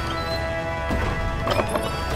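Background music of held, sustained tones, with a few sharp knocks about a second in.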